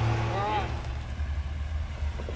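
Off-road Jeep engines running: a steady hum for the first half second, then an uneven low engine rumble as a Jeep Wrangler crawls up a rocky track at low speed.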